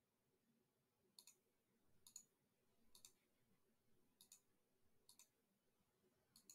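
Faint computer mouse clicks: five quick double clicks about a second apart, placing the points of a zigzag line drawing on a chart.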